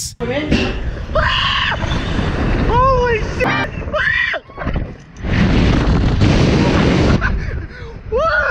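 Wind rushing hard over a ride-mounted camera's microphone as the Slingshot reverse-bungee capsule is launched skyward, with a brief lull about halfway. Riders' short yells and screams rise over the wind noise a few times.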